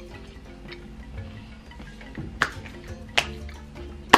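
Quiet background music with plucked guitar, and two sharp clicks in the second half from a person chewing crunchy toasted bread.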